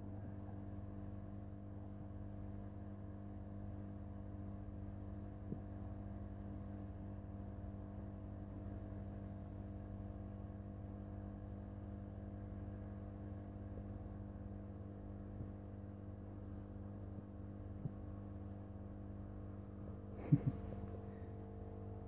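Steady low electrical hum with a stack of even overtones, a few faint ticks over it, and one short louder sound near the end.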